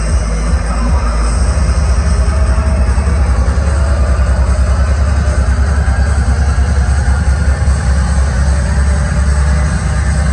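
Loud electronic dance music played over a nightclub sound system, with a heavy bass line that comes in strongly about a second in and keeps a fast pulse.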